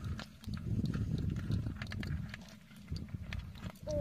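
The live catch of eels, snakes and crabs moving in a metal bucket, giving scattered light clicks and scrapes over a low rumble that is strongest in the first half.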